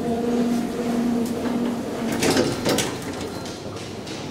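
Elevator car doors sliding open, the door operator's motor humming steadily for about two seconds, followed by a few sharp knocks.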